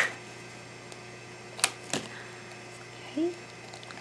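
Stiff plastic lid of a small toy capsule being twisted off, with two short sharp clicks about a second and a half in, a moment apart.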